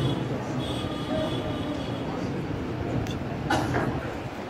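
Steady low rumble of room noise in a crowded hall, with indistinct voices and a sharp knock about three and a half seconds in.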